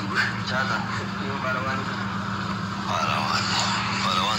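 Men talking over a live-stream connection, with a steady low hum underneath.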